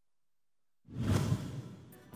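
A news section-intro sting: a whoosh sound effect with a short burst of music that starts suddenly after nearly a second of dead silence, then fades away.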